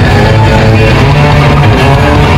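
Surf rock band playing live and loud, electric guitars over a steady low bass.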